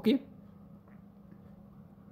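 A man's voice says 'okay' right at the start, then only a faint, steady low hum of room tone.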